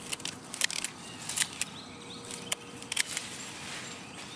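Scissors snipping through sweet potato vines: a series of short, sharp clicks at irregular intervals, with the leafy vines rustling.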